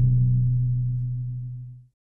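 Low, steady held note ending an outro logo sting, fading away and cutting off just before the end.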